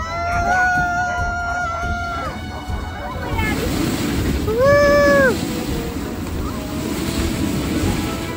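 Dog sled running over snow: a rushing hiss of the runners and wind on the microphone that grows after about three seconds. Over it come a held high-pitched cry in the first two seconds and a louder rising-and-falling cry about five seconds in.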